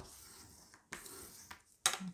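Sheet of heavy paper rubbing and rustling on a wooden tabletop as a diagonal fold is pressed down to set the crease, with a few small clicks, the sharpest near the end.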